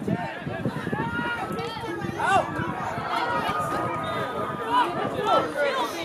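Indistinct voices of several people at once, calling and talking over each other across an open sports field.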